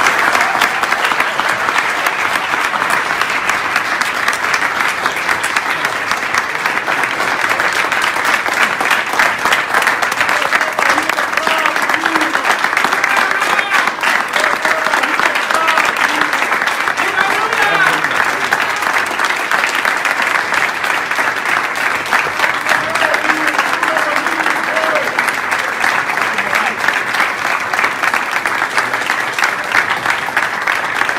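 A large audience applauding steadily in a standing ovation, with voices calling out among the clapping.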